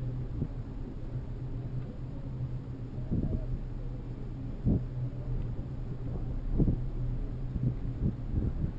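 Steady low rumble of a bicycle ride on a paved city bike path: tyre and road noise with wind on the microphone, and a few short knocks from bumps, one about halfway through and two more near the end.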